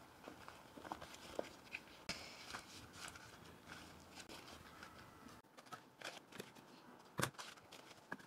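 Faint rustling and soft taps of banana leaves being smoothed and pressed into a glass baking dish by hand, with one sharper tap a little after seven seconds.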